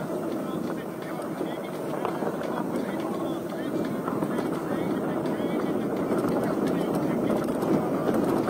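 Steady wind rush over the microphone with tyre rumble from a mountain bike rolling down a dirt trail, with faint scattered rattles and clicks.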